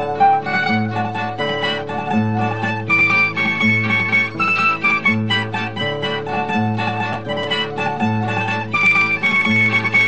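A plucked-string ensemble of mandolin-like treble strings over guitar plays a Navarrese jota in a lively, steady rhythm, with the bass notes recurring regularly.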